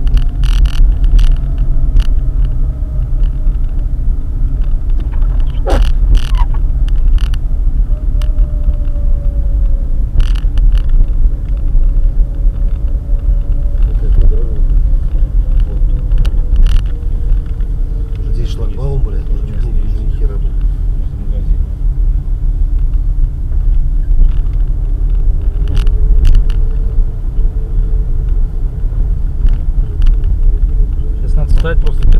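Car driving on snowy, rutted streets, heard from inside the cabin: a steady low rumble of engine and road noise, with the engine note drifting slowly up and down as speed changes. Scattered sharp knocks and rattles, as from bumps in the rutted snow, are also heard.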